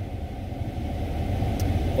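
Steady low rumble of a running car, heard from inside the cabin.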